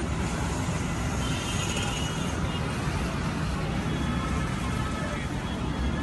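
Steady street traffic noise picked up on a phone's microphone: the even rumble and hiss of vehicles on a busy road.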